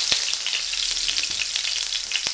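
Minced ginger and garlic frying in hot oil in a wide, flat steel karahi: a steady, hissing sizzle with fine crackles. The ginger and garlic are being fried until golden brown.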